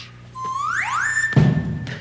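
Slide-whistle comic sound effect: one whistle glides up in pitch and then holds a high note. A dull thump comes partway through the held note.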